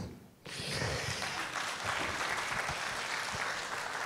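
Audience applauding, starting about half a second in and going on steadily.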